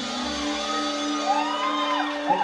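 Live band music thinning out, its bass dropping away about a quarter second in while a sustained chord holds. In the second half a voice calls out in a long rising-and-falling glide, like a whoop from the crowd.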